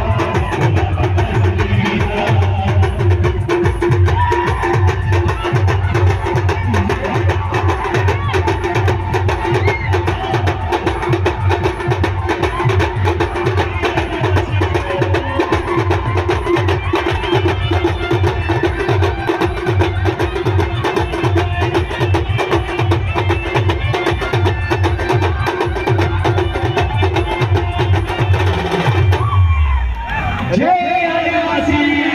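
Live band loop played loud through a loudspeaker stack: fast, dense drumming under a steady held melodic note. It cuts off abruptly at the very end.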